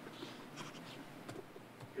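Faint rustling of paper with a few light knocks as papers are handled and set down at a podium microphone.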